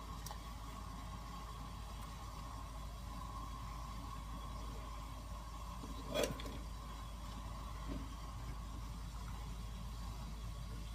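Steady low rumble of a pan of water at a rolling boil on a gas burner, with one brief knock about six seconds in.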